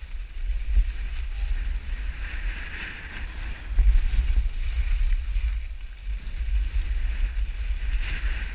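Wind buffeting the microphone in low, gusty rumbles, over the hiss and scrape of skis sliding on snow, which swells and fades in waves as the skis turn.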